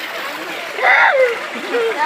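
Steady rush of water gushing from a pipe into a concrete bathing tank, with a loud voice calling out over it about a second in.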